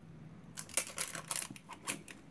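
Crinkling and crackling of plastic packaging being pulled off a new cosmetic product: a quick, irregular run of small sharp crackles starting about half a second in.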